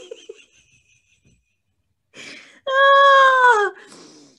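A person's helpless laughter: a run of laughs trails off, then after a short breathless pause comes one long high-pitched squeal of laughter, held for about a second and falling in pitch at its end.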